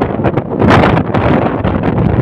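Wind buffeting the phone's microphone high on a building facade: a loud, uneven rushing that swells about a second in.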